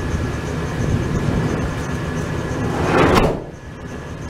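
A van's sliding side door rolled shut and slammed once, about three seconds in, over a steady background rumble.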